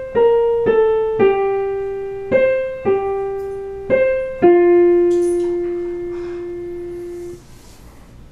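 Digital piano playing a slow melody one note at a time: a short falling run of four notes, then a few more notes, ending on a long held lower note that is let go near the end.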